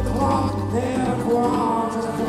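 Scottish folk band playing live: a bowed fiddle carries the melody over guitar and a drum kit, in a reverberant hall.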